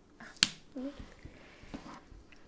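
A single sharp click about half a second in, followed by a short, faint vocal sound.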